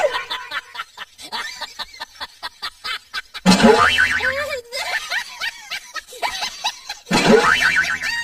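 Cartoon "boing" spring sound effect played twice, about three and a half seconds in and again near the end, each lasting about a second with a wobbling pitch. It is preceded by a run of quick clicks.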